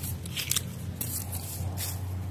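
Hand pruning shears snipping lemon tree shoots and leaves: a few short, sharp snips spaced roughly half a second to a second apart.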